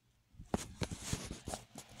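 A run of irregular clicks and rustling, starting about half a second in.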